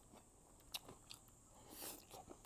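Near silence: room tone with a few faint ticks and a brief soft hiss near the end.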